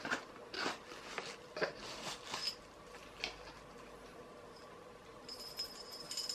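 Faint rustling and light clicks as a small card gift box is opened and its contents are handled. Near the end, a little metal bell on a baby rattle jingles with a thin, high ring.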